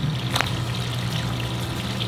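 Water trickling steadily into a pond, over a steady low hum, with a single sharp click about half a second in.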